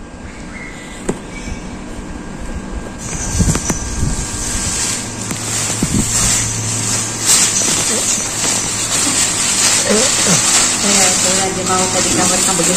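Rustling and handling knocks as an inflatable plastic baby swim float is pushed into a cloth tote bag, starting about three seconds in. A steady low hum runs under it through the middle, and voices come in near the end.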